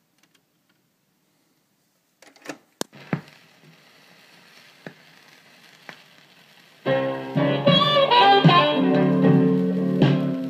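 Turntable stylus landing on a vinyl 45 single: a few sharp clicks and a thump a couple of seconds in, then faint surface hiss with occasional ticks as it runs through the lead-in groove. Near the end the record's Chicago blues band intro starts, with piano in it.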